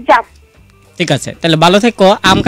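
Dog barking and yelping: a short rising yelp at the start, then after a brief pause a run of barks in the second half.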